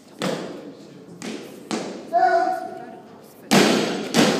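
A voice shouts about two seconds in. About three and a half seconds in comes a loud crash: a loaded barbell with bumper plates dropped onto the lifting platform.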